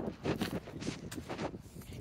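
Footsteps on dry dirt strewn with pine needles and dead leaves: a run of irregular soft crunches and rustles.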